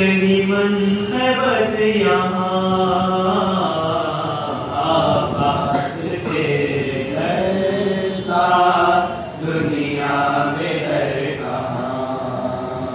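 A young man's voice chanting an Urdu manqabat (devotional praise poem) unaccompanied into a microphone, in long drawn-out melodic phrases with held notes.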